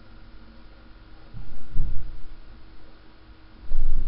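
Steady hum and hiss from a cheap webcam microphone, with two short low thuds, one about a second and a half in and another near the end.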